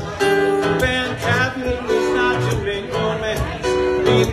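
Live band playing an instrumental passage with guitar, held chords over a steady beat.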